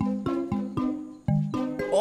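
Light plucked-string background music, short staccato notes about four a second.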